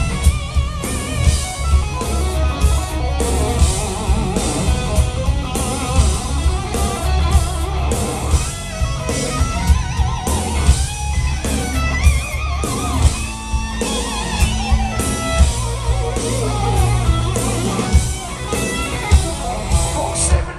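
Live heavy metal band playing an instrumental passage: an electric guitar lead line with wavering, bent notes over a steady drum beat and bass.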